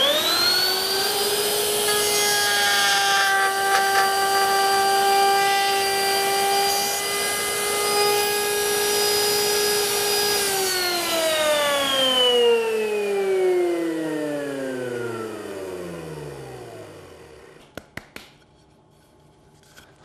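Table-mounted router switched on, its motor whining up to full speed within about a second. It runs steadily while the bit cuts a quarter-inch-deep mortise in a table leg. About halfway through it is switched off, and the whine falls away slowly over several seconds, followed by a few light knocks.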